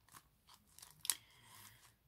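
Faint rustling and scraping of cardstock as a decorated tag is worked out of a tight paper pocket, with a few small clicks and a sharp crackle about a second in.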